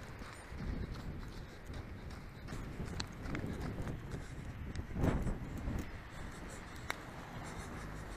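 Wind rumbling on the camera microphone, gusting unevenly, with scattered knocks and a louder thump about five seconds in.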